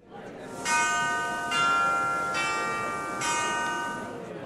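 Bell chimes of a closing logo jingle: after a short swell, four struck bell tones a little under a second apart, each ringing on and slowly dying away.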